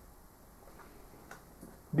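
A pause in a sermon recording: faint background hiss with two faint ticks a little over a second in, before the voice resumes at the very end.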